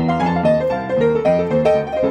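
Gospel piano playing an instrumental passage with no singing: a running line of notes and chords, several a second.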